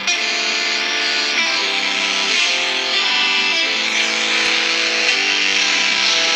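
GarageBand Smart Guitar on an iPhone 6 strumming chords, with a new chord about every second, played through the phone's speaker.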